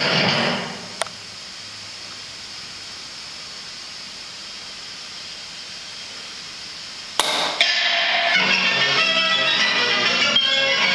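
Recorded music fading out on a final chord, then a single sharp knock about a second in, followed by several seconds of steady faint hiss. At about seven seconds a sharp click and loud backing music starts again.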